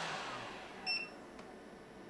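A heat gun's fan and element winding down as its power cuts out, the sound falling away over the first half second. About a second in there is a short, high electronic beep. The cutout is the chained EcoFlow R600 Max power stations shutting down under the roughly 1150 W load.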